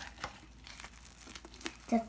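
Purple glitter fluffy slime, made with hair mousse and a detergent activator, being squished and pulled apart by hand over a glass bowl, giving off soft irregular sticky clicks and pops.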